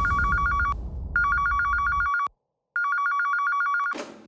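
Corded landline telephone ringing: a warbling electronic trill that comes in three bursts of about a second each with short gaps between them. The ringing stops with a brief clatter near the end as the receiver is lifted.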